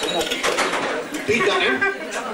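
Indistinct talking: people's voices, with no clear words.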